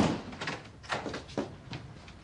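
A door opening with a loud knock, followed by four lighter knocks.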